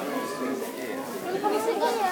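Background chatter of several people talking at once, with no single clear voice.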